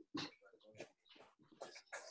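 Faint, scattered scuffs and squeaks of wrestling shoes on a mat as a wrestler shuffles his feet and steps out of a low stance.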